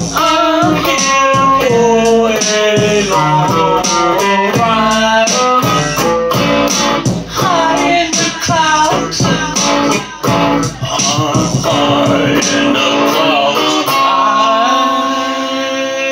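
Electric guitar strummed and picked in a rock song, with a man singing over it. Near the end the strumming stops and a last chord is left ringing.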